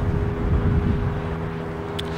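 A steady mechanical hum of several held tones, like a motor or engine running at a constant speed, with an uneven low rumble of wind on the microphone.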